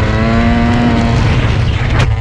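Yamaha YZ125 two-stroke dirt bike engine running under way, a high steady note that climbs slightly and then fades about a second in, over a heavy low rumble.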